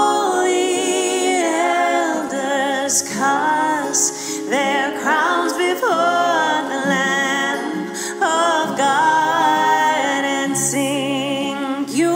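A worship song being sung, the voices holding long notes with vibrato.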